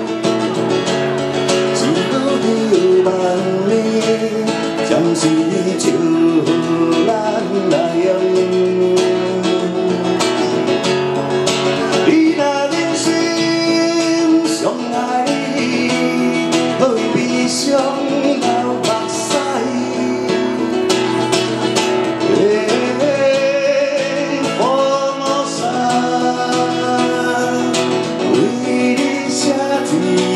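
A man singing a slow song to his own strummed nylon-string classical guitar, the voice and guitar amplified through a microphone.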